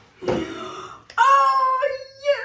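A woman's drawn-out, high-pitched vocal exclamation, held for about a second and starting a little after a short breathy burst.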